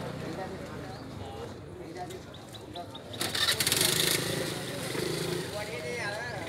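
Faint background voices of people talking over a low steady hum, with a loud rushing noise lasting about a second, starting about three seconds in.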